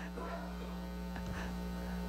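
Steady electrical mains hum and buzz through a hall's sound system: a low hum with a ladder of higher buzzing overtones, unchanging throughout.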